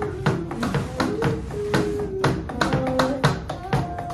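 Live band playing an instrumental passage: held melody notes from electric guitar and keyboard over a steady beat of drumsticks tapping the pads of an electronic drum kit, about four strikes a second.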